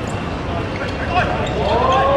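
A football knocking against the feet and the hard court surface a few times as it is dribbled, with players' voices calling out near the end.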